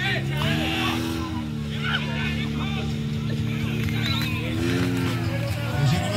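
Portable fire pump engine running at high revs as it drives water through the attack hoses, its pitch stepping up about half a second in and rising and falling again near five seconds. Spectators shout over it.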